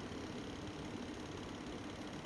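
Faint steady background hum of room tone, with no distinct event.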